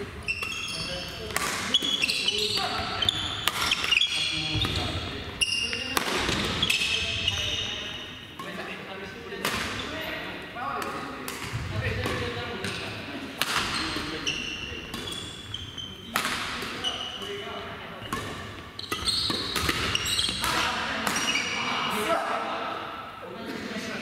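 Badminton rallies in a large gym hall: repeated sharp racket hits on shuttlecocks at irregular intervals, echoing, with players' voices underneath.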